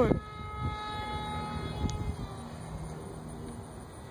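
Distant RC model airplane flying overhead, its motor and propeller making a steady droning hum that fades away.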